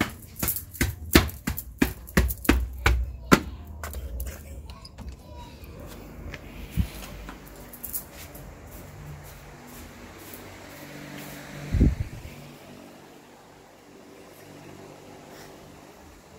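Brisk footsteps on a hard floor, about three steps a second for the first four seconds. Then softer scattered clicks and a single low thump about twelve seconds in.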